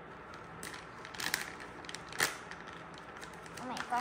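Plastic bag of shredded mozzarella crinkling and crackling as it is handled and pulled open, with a few sharp crackles about one and two seconds in.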